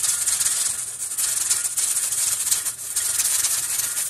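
Pressure canner's weighted regulator jiggling on the vent pipe, letting steam out in a continuous hissing rattle. This is the sign that the canner has come up to pressure.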